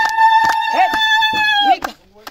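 A woman's voice holding one long, high, steady celebratory note over rhythmic hand clapping and other voices; the note breaks off near the end.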